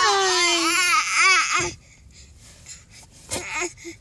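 Six-month-old baby crying out in wavering wails for about a second and a half, then falling quiet.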